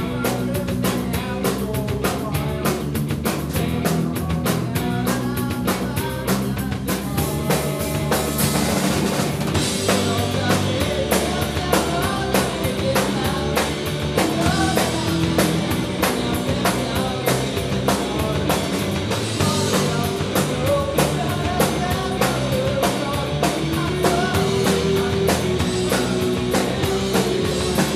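Live rock band playing: drum kit, electric bass and electric guitar in a driving, steady-tempo passage. About ten seconds in the cymbals open up and the sound gets fuller.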